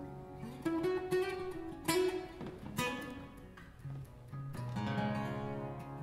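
Two acoustic guitars play the closing bars of a song: single plucked notes ring out one after another, then a fuller final chord rings from near the end.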